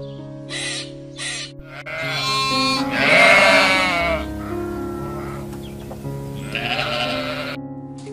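Sheep bleating twice over background music: a long, loud, wavering bleat about two seconds in and a shorter, quieter one near the end.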